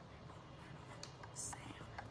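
Faint scratching of a pencil writing on notebook paper, with a light tap about halfway through.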